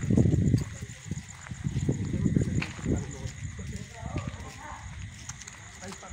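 Indistinct voices over uneven low rumbling bursts.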